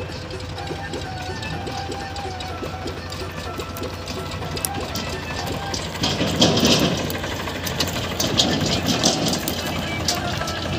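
Farmtrac tractor's diesel engine running as it pulls a loaded trolley, growing louder as it comes close about six seconds in, with a crackling, rattling noise as it passes. A song with a singing voice plays over it.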